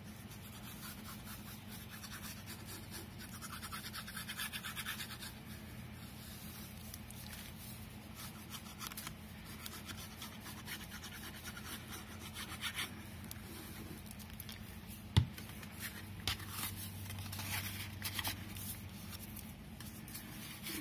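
Faint scratching and rubbing of a glue bottle's fine-tip nozzle drawn along kraft paper while liquid glue is laid down, with light paper handling, over a steady low hum. A single sharp click about three quarters of the way through.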